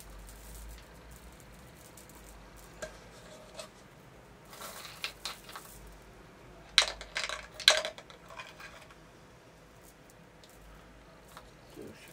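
A small glass bottle handled in a cloth towel: soft fabric rustling, then two sharp glassy clinks about seven and eight seconds in.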